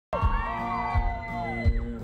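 A live country band plays with a steady kick-drum beat while the audience whoops and cheers over it. The sound cuts in just after a very brief gap at the start.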